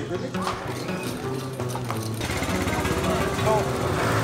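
Background music, with a small motorbike engine running close by from about two seconds in.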